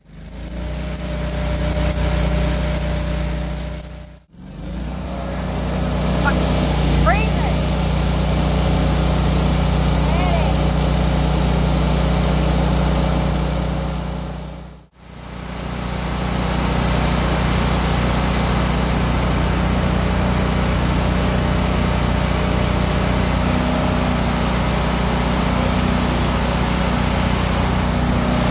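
An engine running steadily at idle, a low even hum that drops out briefly twice, about four seconds in and about fifteen seconds in.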